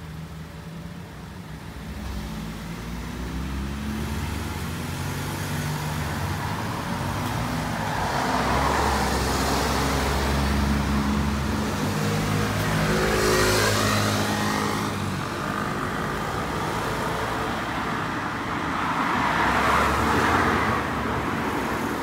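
Cars passing on a street one after another, engine hum and tyre noise swelling and fading as each goes by. The loudest passes come near the middle and again near the end.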